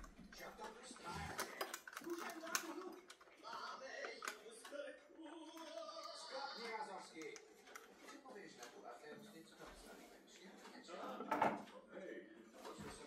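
Faint, indistinct voice in the background with scattered light clicks and knocks from a small tabletop clock being handled and set.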